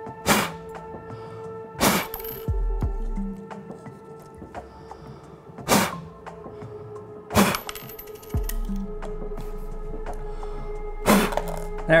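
Five short, sharp blasts of breath blown hard across a dime, the last one popping the coin up into the cup, over steady background music.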